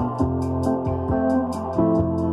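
Mark II electric piano played with distortion and layered with a choir sound, running patterned three-finger runs: sustained low notes, with new notes entering every few tenths of a second. A hiss pulses about seven times a second over the notes.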